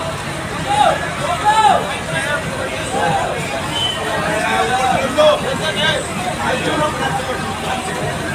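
Crowd hubbub: many voices shouting and calling over one another at once.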